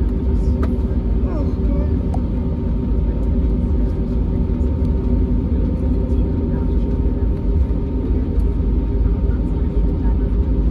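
Cabin noise of an Airbus A320neo taxiing: the engines at taxi power give a steady low rumble with a few constant hums over it.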